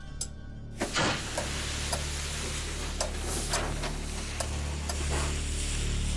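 The wheel lock of a clockwork time bomb snaps off about a second in, and the lit fuse then sizzles steadily with scattered crackles, under a low droning music score.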